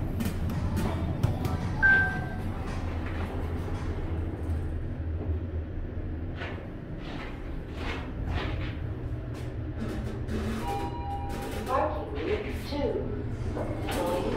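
Indistinct voices and background music over a steady low hum, with a short high beep about two seconds in and a brief two-note tone near the end.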